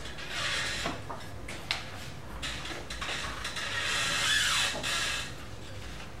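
Pencil drawing on paper: rasping strokes, the longest and loudest about four seconds in, with a few light taps in between.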